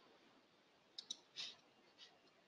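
Near silence, with two faint clicks in quick succession about a second in and a short faint sound just after.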